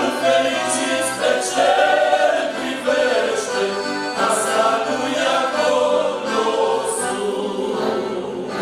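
Male vocal group singing a Romanian hymn in harmony, accompanied by two piano accordions.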